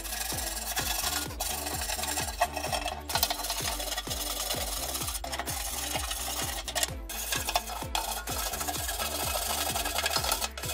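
Steel scraper blade scraping rust and crusted concrete off the rusty sheet-steel body of an old construction cart, in repeated rasping strokes.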